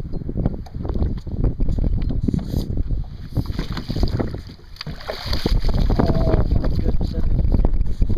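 Water splashing as a stingray thrashes while it is scooped into a landing net beside a boat, loudest around the middle, over a steady rumble of wind on the microphone.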